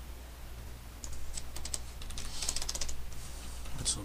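Computer keyboard being typed on: a quick run of key clicks starting about a second in.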